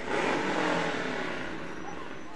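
A group of motorcycles revving and making a roar from down the street, coming in suddenly at the start and easing off.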